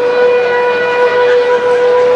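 Alphorn sounding one long held note, steady in pitch and rich in overtones.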